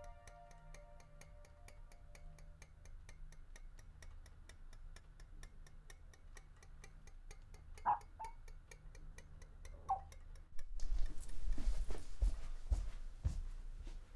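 A clock ticking quickly and evenly, with a couple of short high squeaks around the middle. From about eleven seconds in, louder dull low thumps and rustling take over.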